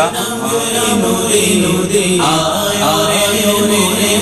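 A voice chanting a melodic religious recitation in long, drawn-out held notes, the pitch gliding slowly between them.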